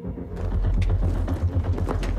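Film soundtrack: a deep, pulsing low rumble starts about half a second in and holds, with a few faint clicks over it.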